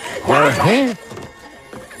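A boy shouting angrily, two loud drawn-out yells with rising-then-falling pitch in the first second, followed by quiet background music.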